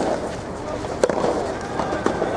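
Rubber soft tennis balls struck by rackets in a rally: sharp pops, one right at the start and a louder one about a second in, with fainter hits from neighbouring courts and background voices.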